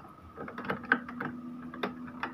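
Small plastic clicks and taps as the ink damper assembly and ink tubes of an Epson L360 inkjet printer are handled and fitted onto the printhead carriage, over a faint steady hum.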